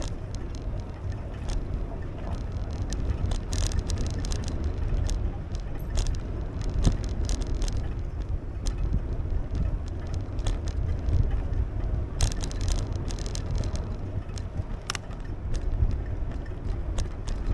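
Bicycle riding along a concrete alley: a steady low rumble of tyre and wind noise on the microphone, with frequent clicks and rattles as the bike rolls over pavement joints and cracks.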